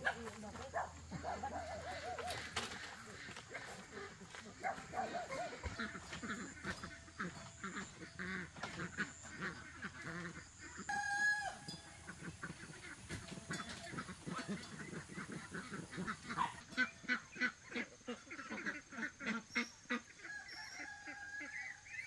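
Farmyard poultry calling again and again, in short wavering calls, with a quick run of calls in the last few seconds.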